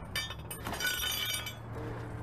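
Metallic clinks with a high ringing, bunched in the first second and a half: a lug wrench knocking against the lug nuts of a steel wheel.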